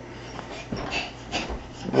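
A toddler's short breathy sounds and soft thumps while jumping on a bed, with a dull low thump about one and a half seconds in.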